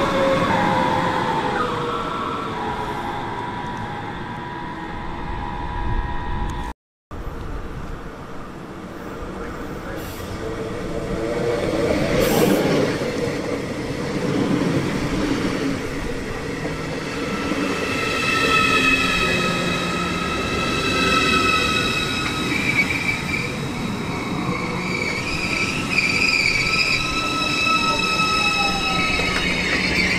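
A class 423 S-Bahn electric multiple unit running past with a falling electric whine. After a short break, an ICE high-speed train rolls slowly along the platform, and from about halfway through a steady high-pitched metallic squeal sits over its running noise.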